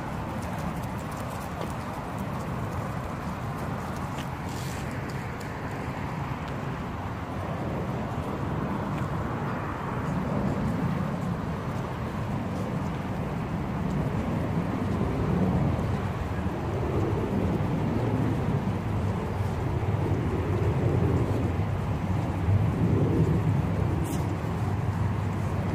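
Steady low rumble of outdoor ambience, growing somewhat louder about halfway through.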